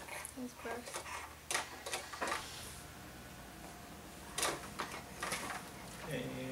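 A few scattered light clicks and knocks of handling at a table, with a brief faint voice near the start.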